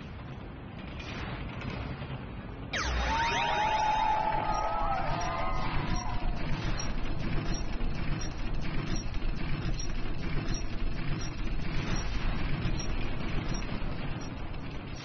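Sound effects of the Crazy Time bonus wheel: a sudden swoosh with gliding, wavering tones about three seconds in as the giant wheel is set spinning, then a steady run of clicks from the wheel's pegs passing the pointers.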